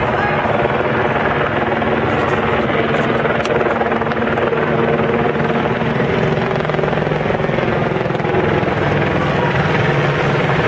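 Loud, steady helicopter drone that comes in suddenly and holds unchanged, with voices mixed in underneath.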